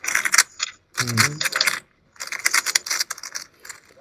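Rapid plastic clacking of a 3x3 speedcube being turned fast during a timed solve, in runs broken by short pauses about one and two seconds in.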